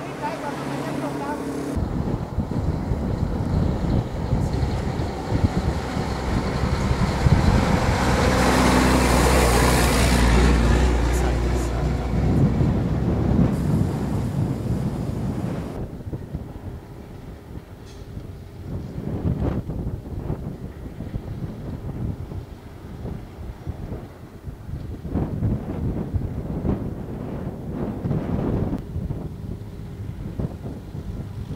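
A heavy vehicle's engine and tyres swell in about two seconds in, are loudest around ten seconds and fade away by about sixteen seconds. After that, wind buffets the microphone in irregular low gusts.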